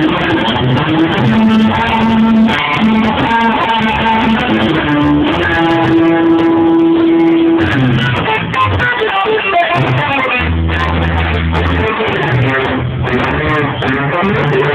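Live rock band playing: electric guitar over bass guitar and drums, with a long held guitar note in the middle.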